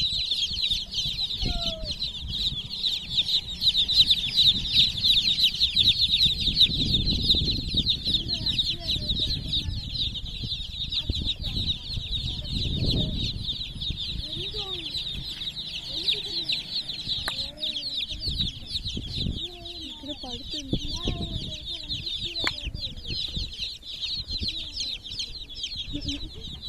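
A crowd of baby chicks peeping all at once: a dense, unbroken chorus of high cheeps with no pause.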